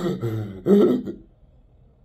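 A man's short, low laugh in two brief bursts, ending about a second in.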